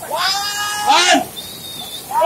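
A child's high-pitched, drawn-out calls: one long held note, then a short rising-and-falling one about a second in.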